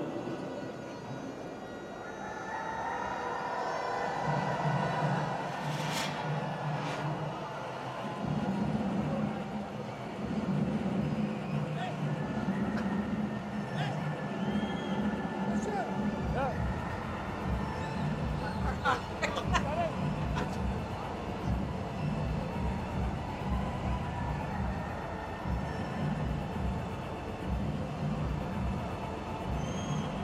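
Cricket stadium crowd noise with music playing over it, a steady beat coming in a few seconds in and running on.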